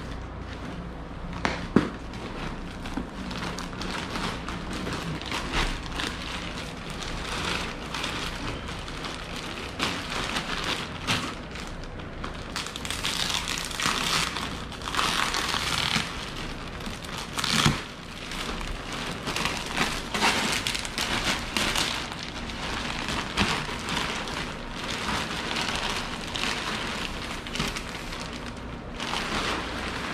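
Plastic wrapping crinkling and rustling as a compressed, rolled dog bed is lifted from its cardboard box and unwrapped, louder about halfway through, with a couple of sharp knocks.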